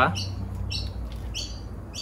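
Small birds chirping: a few short, high calls falling in pitch, spaced about half a second apart, over a faint low steady hum.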